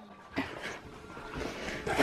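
A dog's short, quiet noises, with a brief louder burst near the end.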